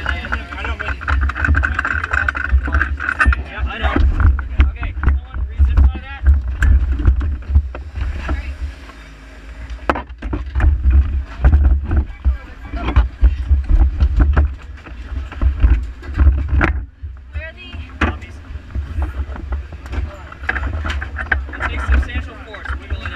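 Pit-area noise: a steady low rumble of wind on the microphone, scattered knocks and clatter of handling close by, and people talking in the background.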